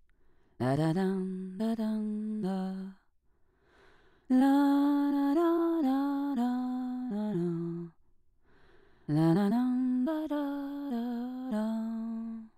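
A person humming a slow tune in three phrases of held notes that step up and down, with short pauses between phrases.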